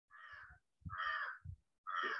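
A bird calling three times, the calls about a second apart.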